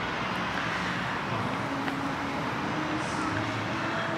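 Steady city street background noise: the hum of road traffic, with a faint low tone coming and going.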